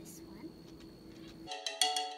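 Faint steady background, then about one and a half seconds in, background music cuts in abruptly: a tune of struck, quickly fading pitched notes like mallet percussion.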